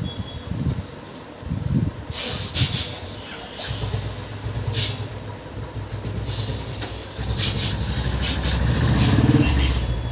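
Hand massage on a man's head and face: rubbing of hands over skin and hair with sharp slaps now and then, a few around two to three seconds in, one near five seconds, and a quick run of them between about seven and eight and a half seconds, over a low rumble.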